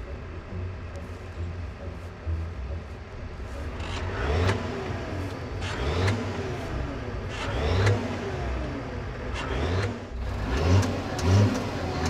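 Tractor diesel engine idling, then revved in repeated short blips from about four seconds in, each rising and falling in pitch.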